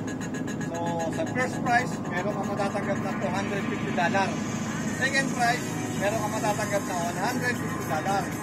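A man talking over the steady low drone of the boat's engine.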